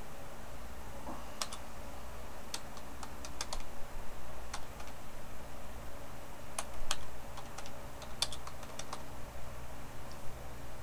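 Computer keyboard typing: irregular short runs of keystrokes with pauses between them, over a faint steady low hum.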